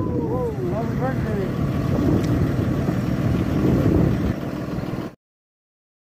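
A group of men's voices, with rising and falling calls in the first second, over the low running of an idling bus engine. All sound cuts off abruptly about five seconds in.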